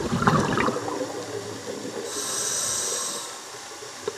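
Scuba diver breathing through a regulator underwater: a gurgling rush of exhaled bubbles in the first second, then the steady hiss of an inhale from about two seconds in, lasting just over a second.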